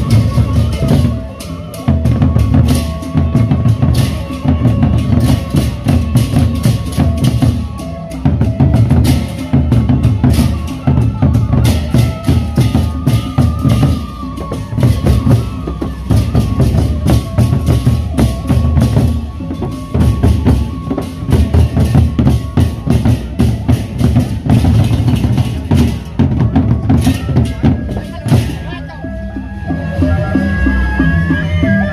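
Gendang beleq ensemble playing: large Sasak double-headed barrel drums beaten with sticks in a dense, driving rhythm, with clashing hand cymbals over them.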